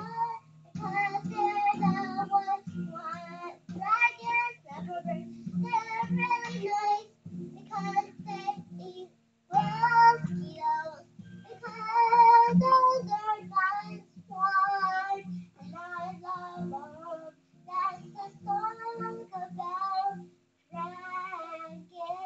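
A young girl singing in a high child's voice, to a low note plucked on an acoustic guitar lying flat across her lap about twice a second.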